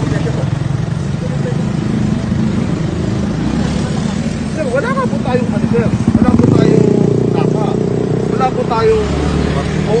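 Road traffic and vehicle engine noise, a steady low rumble that grows louder about six seconds in, with indistinct voices over it.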